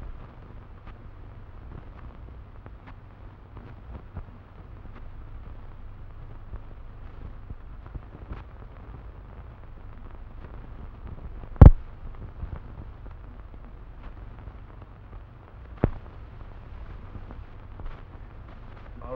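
Old optical film soundtrack noise: a steady low hum and hiss with faint crackle, broken by two sharp pops, the louder about two-thirds of the way through and a smaller one some four seconds later.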